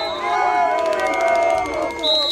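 A crowd of protesters booing and shouting together, many voices overlapping, with a high whistle held above them.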